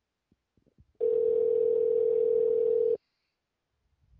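Telephone ringback tone heard down the line: a few faint line clicks, then one steady, low two-second ring that cuts off suddenly. The call is ringing through at the far end and has not yet been answered.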